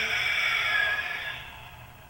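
A karateka's long, hissing exhalation forced out under full-body tension, the controlled breathing of Goju-ryu Sanchin kata. The breath fades out about a second and a half in.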